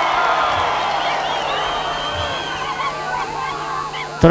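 Large crowd cheering and shouting, loudest at first and slowly fading, with high wavering calls rising above the mass of voices.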